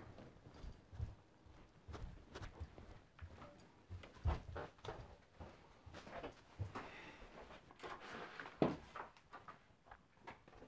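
Footsteps of two people walking down carpeted stairs: irregular soft thumps with small clicks, two of them louder, about four seconds in and near nine seconds.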